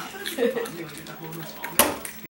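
A West Highland white terrier snuffling with its nose to a wooden floor, with one short, sharp snort near the end. A person's voice comes in briefly about half a second in.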